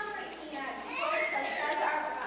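A child's voice speaking, with no other clear sound.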